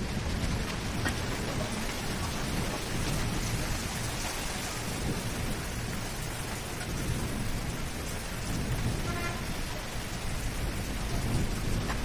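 Steady rain, an even rushing hiss with a low rumble underneath, running without a break.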